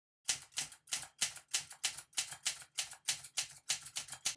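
A quick, even run of sharp clacks, about five a second, each dying away fast, like typewriter keys striking; it starts about a quarter of a second in.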